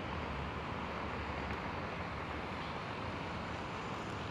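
Steady low background noise of wind on the microphone and distant vehicles, with no distinct events.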